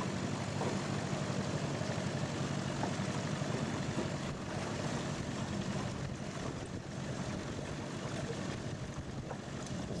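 Small outboard motor running steadily at trolling speed, a low even hum, with wind noise on the microphone.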